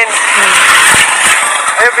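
A vehicle going by on the road, a steady rush of road noise that fades out just before a man's voice comes in near the end.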